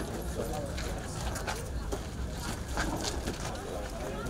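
Crowd of people walking together through a busy market: indistinct voices mixed with footsteps and scattered short clicks and knocks.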